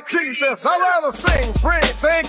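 Hip hop track with a rapped vocal over the beat. The deep bass drops out, then comes back in with the beat about a second in.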